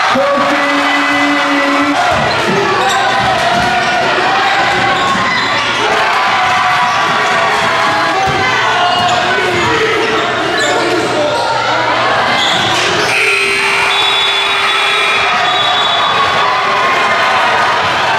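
Live basketball game sound in a gym: the ball bouncing on the court amid a crowd shouting and cheering.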